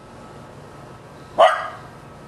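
A dog barks once, a single short bark about one and a half seconds in.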